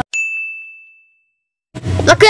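A single bright ding, a bell-like sound effect that strikes once and rings out, fading over about a second. Music and a voice come back in near the end.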